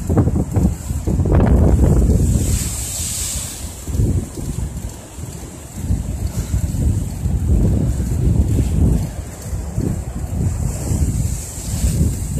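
Gusting wind buffeting the microphone over choppy lake waves breaking and splashing against a stepped concrete shoreline, rising and falling in loudness.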